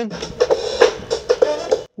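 A scratch beat, a looped drum-kit pattern, playing back through a Pioneer DJ DDJ-REV1 controller; it cuts off suddenly just before the end.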